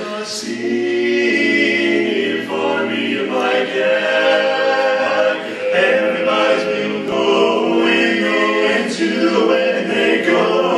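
Male barbershop quartet singing a cappella in close four-part harmony, holding chords that shift every second or so.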